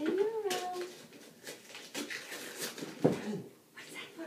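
A dog whining in a rising and falling glide near the start, amid scattered rustling and clicks, with a sharp knock about three seconds in.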